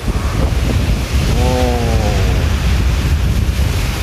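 Sea waves surging and washing over shoreline boulders, with strong wind rumble on the microphone. About a second in, a man's voice lets out a brief wordless call.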